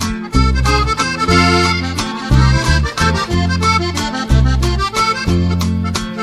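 Instrumental norteño backing track with no vocals: an accordion plays a melodic run between verses. Bass notes and a steady beat run underneath.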